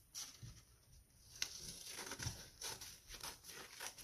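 Faint rustling and snipping of scissors cutting a glossy magazine page, with one sharp click about a second and a half in.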